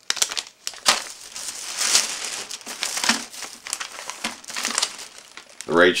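Thin plastic shopping bag crinkling and rustling as it is handled, in irregular crackles.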